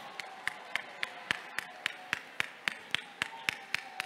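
Hands clapping in a steady, even rhythm, about four claps a second, with a faint held tone underneath.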